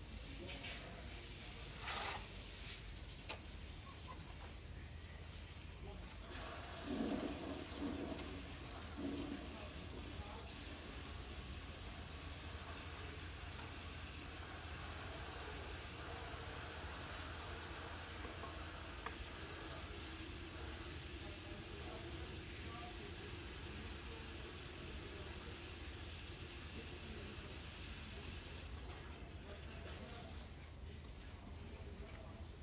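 A steady rush like running water sets in about six seconds in and lasts until just before the end. A few short light knocks come in the first few seconds.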